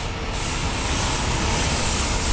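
Steady rumbling, hissing city street noise with no clear single event.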